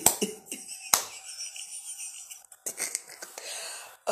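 Low, broken talk, with two sharp clicks about a second apart near the start.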